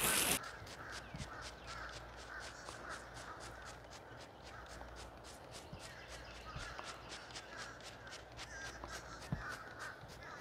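A garden hose spraying water onto the roof cuts off just after the start; then a hand trigger spray bottle squirts cleaner in quick short pulses, about four a second.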